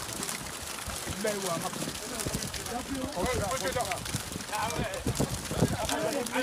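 Several people talking in the background, voices overlapping, with scattered knocks and thuds.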